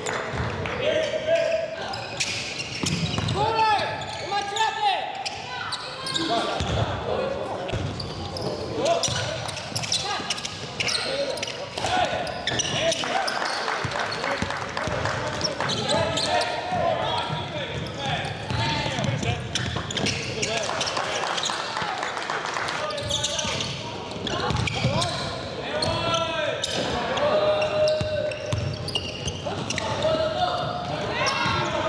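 Live sound of an indoor basketball game: a basketball bouncing on the hardwood floor, with players' and spectators' shouts and chatter echoing in a large gym.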